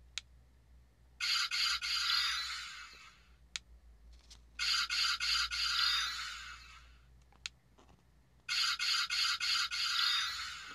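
Ultra Replica Beta Capsule toy transformation device playing the same short, rapidly pulsing electronic sound effect three times through its built-in speaker, each one set off by a press of its button. A sharp button click comes about a second before each effect as the device is cycled through its B-mode patterns.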